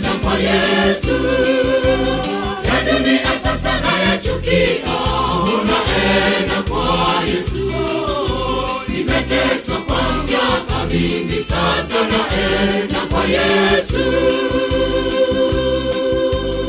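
Gospel song: a choir singing over a steady bass line and drum beat.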